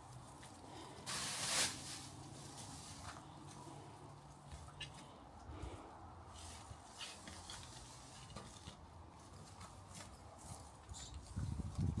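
Faint sounds of a shrub being dug out with a garden fork: a short rustling scrape about a second in, then quiet scattered ticks and rustles of soil, roots and leaves as the plant is worked loose.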